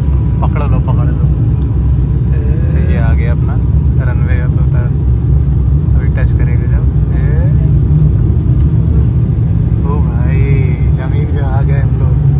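Loud, steady low rumble inside an airliner cabin as the plane lands and rolls along the runway, with voices over it at times.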